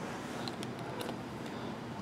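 Low, steady background hiss with a few faint light clicks about halfway through.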